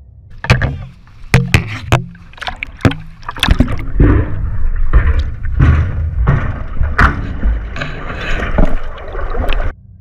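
Great white shark crashing into a steel shark-diving cage. A series of sharp knocks and clanks of the cage comes first, then a long stretch of churning, sloshing water and thrashing heard partly underwater, which cuts off abruptly just before the end.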